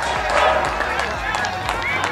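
Background chatter of several spectators talking at once, with a steady low hum underneath and a few short whistle-like notes near the end.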